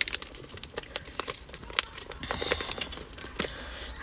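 A small plastic seasoning packet crinkling and crackling in the hands, with many scattered light clicks, as its powder is shaken out.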